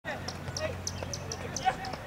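Soccer match heard from the sideline: scattered voices of players and spectators, a steady high chirping repeating about three to four times a second, and a single loud thump of the ball being kicked near the end.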